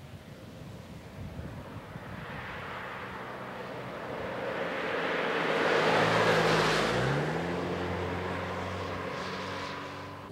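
Peugeot 306 Break estate car driving past: its engine and tyre noise build as it approaches, peak about six seconds in, and then the engine note drops in pitch as the car passes and moves away.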